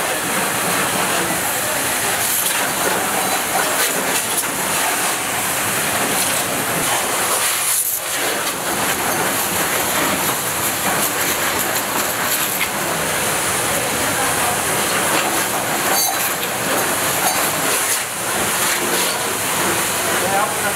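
Water jet from a hose nozzle spraying hard onto a motorcycle, a steady loud hiss with splatter off the bodywork and wheels, dipping briefly about eight seconds in and again near the end.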